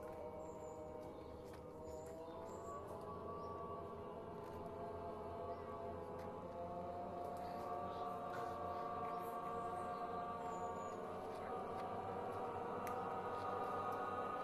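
An untrained improvising voice choir holding long, overlapping sustained tones at many different pitches, a slowly shifting cluster drone that gradually swells louder.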